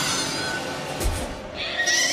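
Film sound effect of a melting liquid-metal android shrieking, an inhuman many-toned scream that starts suddenly, with a low thud about a second in and a higher, piercing tone near the end, over orchestral score.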